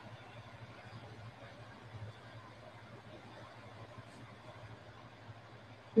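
A slow ujjayi inhale: a faint, steady hiss of breath drawn through a narrowed throat, heard over a low steady hum.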